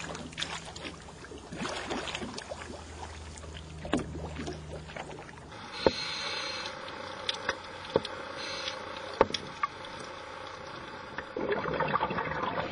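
Water splashing and sloshing around swimmers at the surface, over a low steady hum. About halfway through it changes to a duller, steadier underwater hiss broken by a few sharp clicks.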